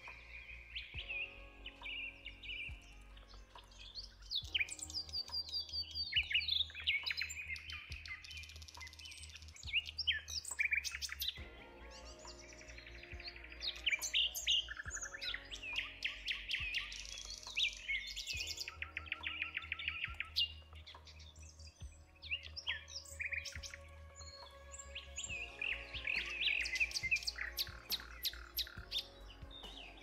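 Several songbirds chirping and trilling in quick, overlapping phrases, some as fast runs of repeated notes, over soft background music with a steady low hum.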